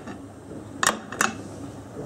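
Two short, sharp clicks about a second in, a third of a second apart, over a faint steady background: a plate being handled as it is brought to a frying pan to tip in meatballs.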